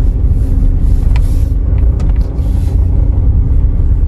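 Toyota compact car driving slowly, heard from inside the cabin: a steady low rumble of engine and road noise.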